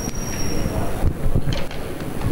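Microphone handling noise: low rumbling and bumps as a microphone is lifted off its boom stand and carried away, with a thin high tone for about the first second.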